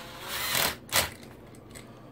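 Makita cordless driver spinning briefly, for about half a second, as it runs in a terminal screw on an electrical outlet, followed by a sharp click about a second in.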